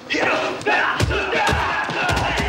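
Audio of a martial-arts film fight scene: men shouting and yelling over a crowd-like din, with a few sharp impacts of blows.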